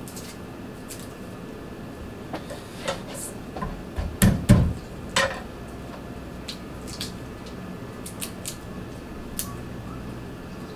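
A kitchen knife knocked and set down on a wooden cutting board: a few sharp clicks, then two heavy thumps about four seconds in. After that come scattered faint ticks as garlic skins are peeled by hand.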